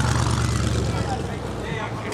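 A car engine running at idle: a low rumble with a rapid, even pulse that dies away near the end.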